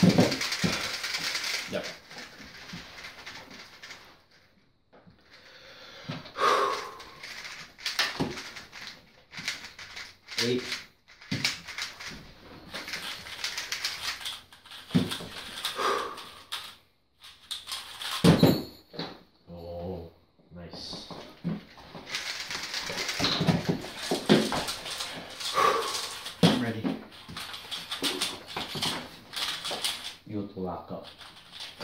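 Plastic clicking and clacking of 3x3 speed cubes being turned and scrambled by hand, in irregular quick runs, with a voice now and then making sounds without clear words.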